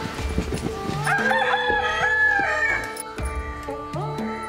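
A rooster crowing once, a long call of about two seconds starting about a second in, over quiet background music.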